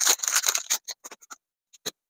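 Foil Pokémon booster pack wrapper crinkling as it is torn open by hand: dense crackling that thins out after about a second, then two short clicks near the end.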